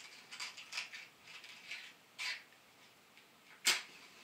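Faint small scratching and handling noises, then a short sharp scrape near the end, the loudest sound: a match being struck to light an oil lamp.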